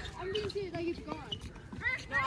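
Indistinct voices of people at the courts: a drawn-out vocal sound in the first second, with scattered faint chatter and calls.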